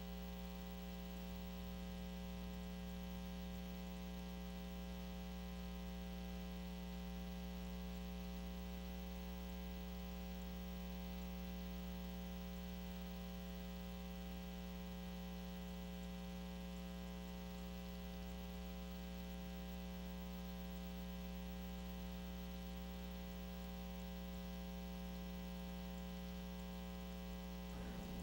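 Steady electrical mains hum with a buzzing edge, unchanging, with no other sound over it.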